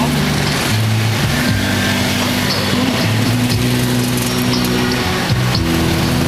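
Music played loud through a car's sound system with the bass turned up to maximum, heard inside the cabin: deep, held bass notes that shift pitch every second or so.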